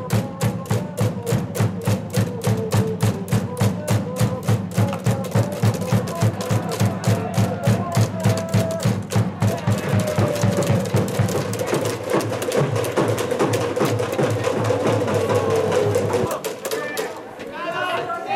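Baseball cheering from the stands: fast, even clapping or clapper beats about four a second, with chanting voices and a steady low musical drone. About 16 s in the beat and drone stop and only voices remain.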